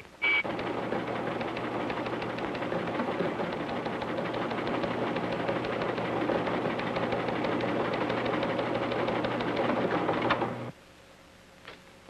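A code-decoding machine clattering rapidly and steadily over a low hum, cutting off suddenly near the end. It starts right after the last of a series of short high beeping code tones.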